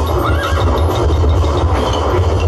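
A horse's whinny, played as a stage sound effect, rising and falling about half a second in, over a quick, even clip-clop of hooves.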